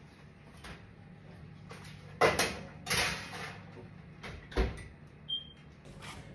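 Oven door and metal baking tray being handled: a few sharp knocks and clatters, the loudest about two seconds in and again near three seconds, then a dull thump past four and a half seconds, like an oven door shutting.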